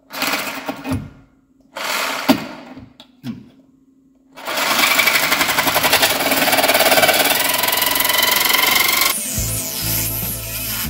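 Reciprocating saw with a metal-cutting blade sawing through a steel suspension bolt at the control arm's inner mount. Two short bursts come first, then one long continuous cut that stops shortly before the end, where music comes in.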